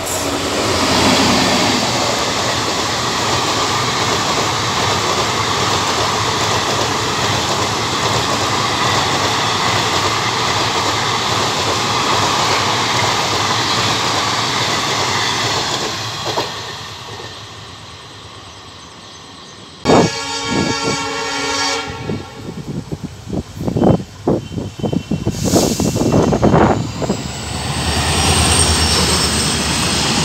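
Steady rail running noise from aboard a moving passenger train, which eases off about halfway through. Then a train horn sounds for about two seconds, followed by a run of irregular clanks and a rising roar near the end as a freight train passes on the adjacent track.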